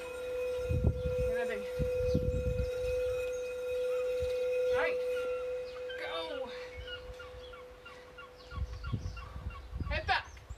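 Birds calling outdoors: a handful of short calls, each falling in pitch, spaced a second or more apart. Wind rumbles on the microphone in gusts, and a steady hum fades out a little after halfway.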